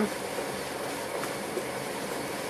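Steady hiss at the stove as a pot of pudding mixture heats over a lit gas burner while being stirred, with a faint tap of the ladle about a second in.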